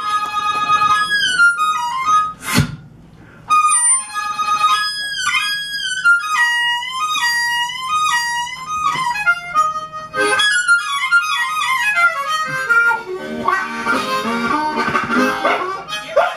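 Solo harmonica played live, cupped in the hands against a vocal microphone: a melody of single notes with many bent pitches. About two and a half seconds in there is a sharp click and a brief pause, and near the end the playing turns to busier, lower chords.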